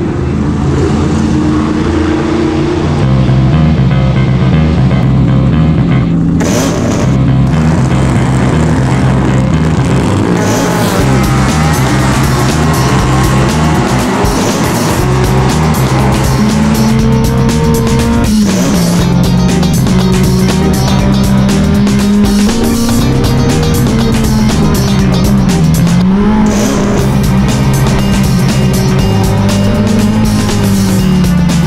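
A music soundtrack mixed with the engine of a historic saloon race car running at racing speed. In the second half the engine note drops and climbs back twice, as the car slows and accelerates again.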